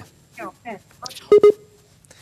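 Two short electronic beeps in quick succession from a mobile video-calling app, the tone heard as the call drops to the on-hold screen.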